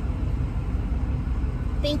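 Steady low rumble of a car's running engine, heard from inside the cabin while the car waits in a drive-through line.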